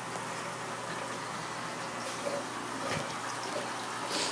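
Aquarium bubbler: steady bubbling of air rising through the tank water, with a couple of faint ticks about three seconds in.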